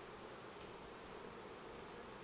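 Honeybees buzzing around an opened hive: a faint, steady hum of many bees in flight.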